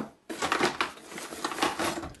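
Plastic packaging crinkling and rustling as a bagged laptop AC adapter and its power cord are handled and lifted out of a cardboard box, starting about a quarter second in with a fast run of small crackles.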